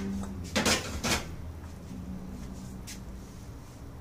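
Kitchenware being handled: two sharp knocks or clinks about a second in, then a fainter click near the end, over a low steady background.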